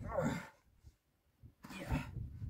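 A man grunting with effort while lifting and fitting a heavy starting engine by hand: a short strained groan at the start and another rising one near the end, with a near-silent pause between.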